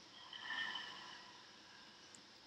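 A woman breathing out slowly through the mouth as part of a diaphragm-breathing exercise. It is a soft, breathy exhale that swells just after the start and fades out before the halfway point.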